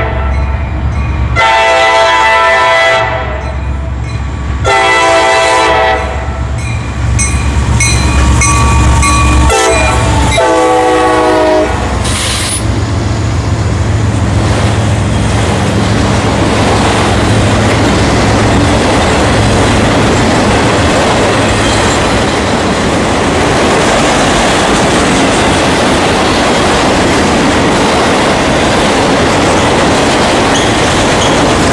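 Diesel freight locomotive's air horn sounding four blasts, long, long, short, long: the standard warning for a grade crossing. The pitch drops at the end of the last blast as the locomotive passes. Then the engine rumble fades and the loaded train rolls steadily by, wheels clacking and grinding on the rails of a long string of autorack cars.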